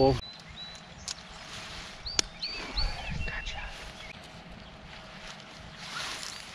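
Birds calling in short, high whistled notes, in two spells. Two sharp clicks, about one and two seconds in, come from the fibreglass/aluminium tent pole being fitted and hooked to the tent.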